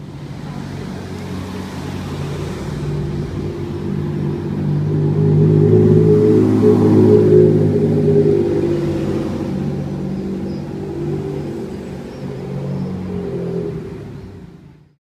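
Ferrari Enzo's V12 engine running as the car drives past and away around a bend, growing louder to a peak about halfway through and then fading off.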